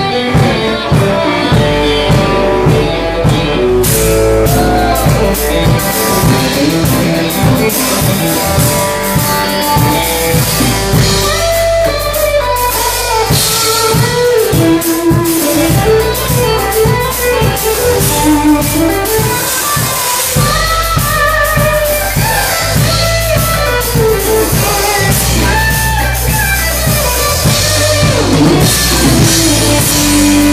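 A live blues band playing at full volume: electric guitar over electric bass and a drum kit. The guitar's notes bend up and down, over a steady bass line.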